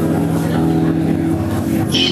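Electric guitar played live through an amplifier, holding one steady sustained chord.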